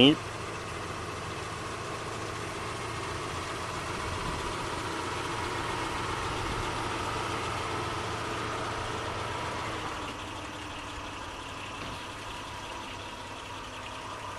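Steady engine hum, growing a little louder in the middle and easing off about ten seconds in.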